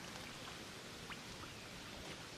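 Hands digging in wet mud, faint, with a few small drips of water, one about a second in.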